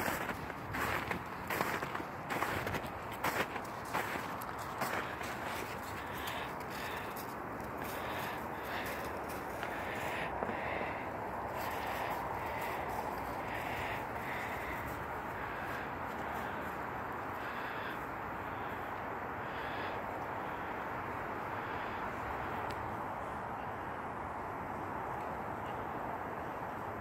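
Footsteps crunching through snow for the first few seconds, then a bird calling with short repeated calls, roughly one a second, over a steady background rush.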